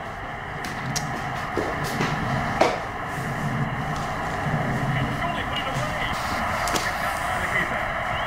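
Stadium crowd noise from a football video game playing on the TV: a steady crowd roar with a few short sharp knocks.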